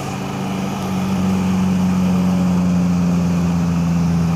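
Motorcycle engine running at a steady cruising speed as it is ridden, heard close up from the handlebars with road and wind noise, getting a little louder about a second in.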